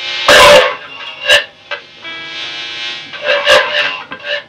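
Amplified hollow-body electric guitar (Gibson ES-175D) played as free noise improvisation. Sustained ringing tones are broken by loud, harsh noisy bursts: a big one just after the start, a short sharp one a second later, and another cluster near the end.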